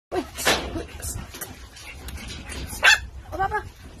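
Pomeranian puppy barking in a few short, high yaps, the loudest one near the end.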